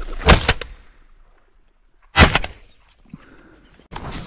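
Two shotgun shots about two seconds apart, fired at game birds that have just flushed.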